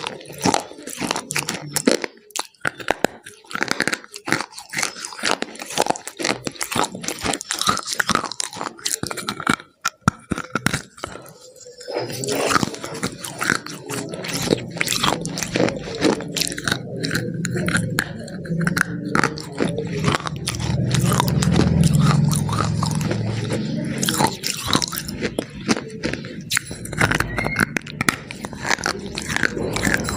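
Close-miked biting and chewing of a crumbly white food: a dense run of crunches and crackles, with fuller, lower chewing sounds in the second half.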